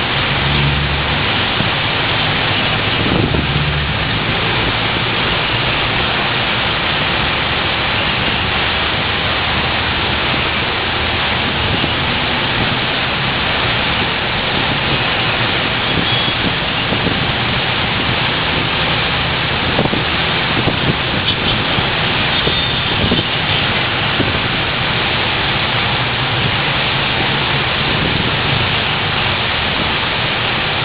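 Heavy tropical downpour: a dense, steady hiss of rain mixed with traffic on the wet road below. A low rumble comes in the first few seconds.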